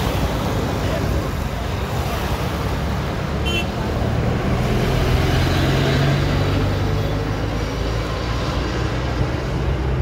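Road traffic with wind on the microphone: a steady rush of vehicle noise, with a low engine sound that grows stronger about four seconds in and eases off about three seconds later.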